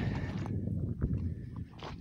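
Footsteps on loose gravel and rounded stones, a few irregular steps.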